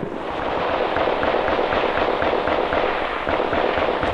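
Dense, continuous crackle of small-arms gunfire in a firefight, steady in loudness throughout.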